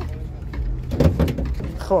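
A car bonnet being unlatched and lifted open on a Daewoo Nexia, a short metallic clatter about a second in.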